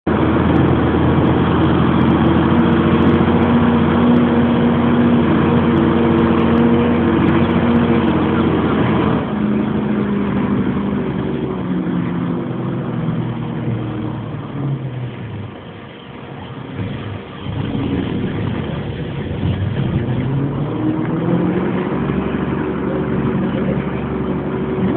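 Truck engine running steadily, then easing off with its pitch falling about halfway through, and revving up again with a rising pitch near the end.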